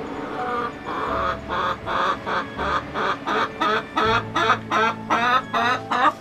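Nagoya Cochin chicken clucking, a steady run of short calls at about three a second starting about a second in, over background music.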